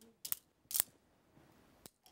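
Wooden rhythm sticks tapped together in a few sharp, separate clicks about half a second apart, with a fainter one near the end, beating out the syllables of a spoken name.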